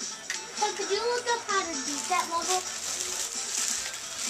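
A young child's wordless voice, gliding up and down in pitch like humming or singing, with a few light clicks.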